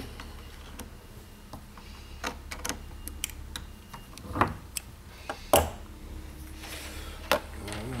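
Scattered metallic clicks and clinks of an Allen key working the blade holder on an aluminium wire-stripper block as the sheath-cutting blade is moved aside, the sharpest clack about five and a half seconds in, over a low steady hum.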